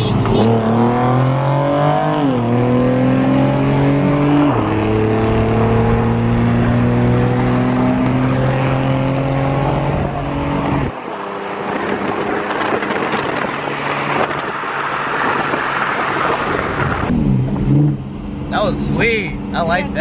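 Car engine at wide-open throttle accelerating hard in a roll race, its pitch climbing, dropping at two quick gear shifts about two and four and a half seconds in, then climbing slowly again. About eleven seconds in the engine note cuts off suddenly, leaving wind and road rush.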